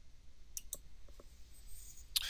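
A few faint, sharp clicks, three or four in quick succession about half a second to a second in, over a low steady hum.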